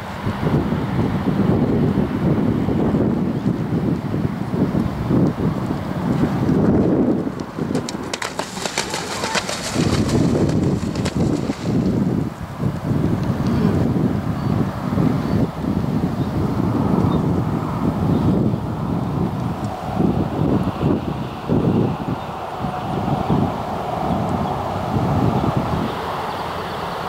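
Wind buffeting the microphone: a loud, gusting low rumble that surges and dips throughout, with a brief spell of higher hiss about eight to eleven seconds in.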